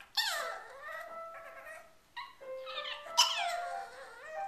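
A dog yowling along to a piano: two high cries that slide down in pitch, one at the start and a louder one about three seconds in, with single piano notes sounding between them.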